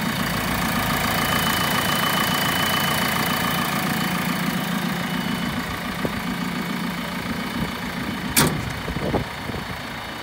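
JCB 6TFT site dumper's diesel engine idling steadily, with its rear engine cover slammed shut about eight seconds in, followed by a lighter clunk.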